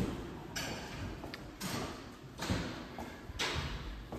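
Footsteps on hard solid-surface hallway flooring, four steps at an even walking pace of about one a second.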